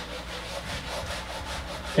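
A whiteboard eraser wiping across the board surface, making a steady rubbing hiss.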